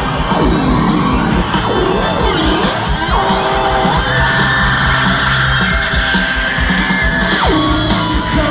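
Rock band playing live and loud, with guitar over a steady beat. Sliding pitch glides come in the first three seconds, then a long held high note from about four seconds in that slides down near the end.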